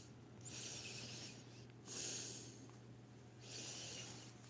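A man breathing close to the microphone: three soft, hissy breaths of about a second each.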